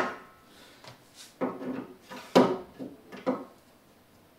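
Irregular knocks and clacks, about six of them, with brief rubbing in between, as the plastic frame profiles and rods of a collapsible terrarium base are handled and fitted together.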